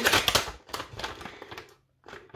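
A plastic packet of sliced cheese crinkling and crackling as it is handled, loudest in the first half second and then thinning out into scattered crackles before stopping.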